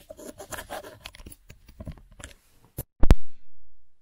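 Handling noise as a Rode VideoMic Pro Plus microphone plug is fitted into the DJI Osmo Pocket's audio adapter: scratching and small clicks, then a sharp click and a loud pop about three seconds in as the plug goes in. The sound then cuts out as the camera switches to the external mic.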